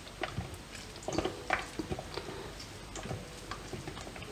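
Feta cheese crumbled between fingers into a stainless steel mixing bowl of watermelon cubes: faint, irregular small ticks and pats as the crumbs drop.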